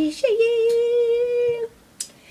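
A woman's unaccompanied voice holding one long, steady sung note for about a second and a half, then breaking off.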